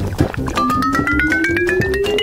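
Background music with a comic sound effect: a slow, smooth rising tone, with a second tone climbing in small steps above it, starting about half a second in.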